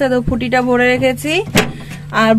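A voice singing or chanting in long held, wavering notes, with a short sharp click about a second and a half in.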